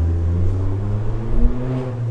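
Digital keyboard sounding low, sustained bass notes, with little of the upper range.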